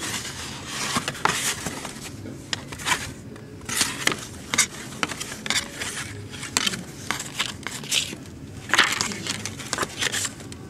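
Old card-mounted photographs being flipped through by hand: stiff card stock sliding and scraping against the neighbouring cards in short, irregular rustles.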